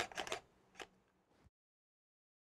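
A quick cluster of faint clicks and rustles from handling a DSLR camera, then a single click just under a second in. The sound cuts off abruptly about halfway through.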